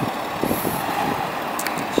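Volkswagen Touareg's 3.0 V6 TDI diesel engine running at low speed as the SUV creeps forward over a dirt surface, with a few faint clicks.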